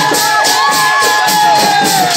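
A crowd singing a Mising festival dance song, with brass cymbals keeping a quick even beat of about three or four strokes a second and a long held note over it.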